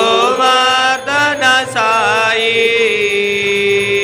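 Devotional aarti song: a singing voice over musical accompaniment, with gliding, ornamented phrases and then one long held note from about halfway through.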